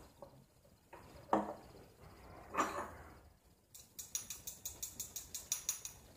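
Small hot sauce bottle being shaken and tapped over a spoon to get the sauce out: a rapid, even run of light clicks, about six a second, starting a little past halfway. Two soft rustles come before it.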